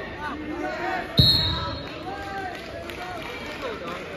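A single sharp thud about a second in, from wrestlers' bodies hitting the gym's wrestling mat, over the chatter of spectators.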